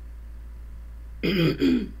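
A woman clearing her throat in two short rasps, about a second and a quarter in, from a head cold.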